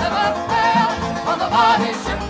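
Folk music: voices singing with banjo and guitar accompaniment.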